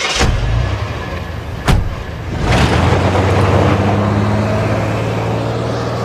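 An SUV's engine running, then revving as the vehicle pulls away, louder from about two and a half seconds in and slowly easing off. A single sharp knock comes shortly before the revving.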